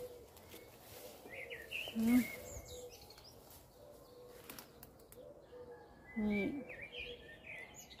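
Birds chirping in the background, short high chirps coming now and then.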